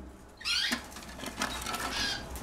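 A small cage bird chirping: one short, pitch-bending call about half a second in, then fainter chirps, over a low steady hum.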